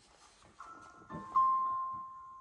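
A musical jewelry box's built-in player starting a calm melody as the box is opened: near silence at first, then soft, clear single notes entering one by one about half a second in.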